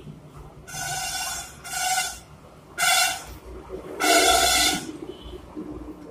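A vehicle horn honks four times in short blasts, the last one the longest and loudest.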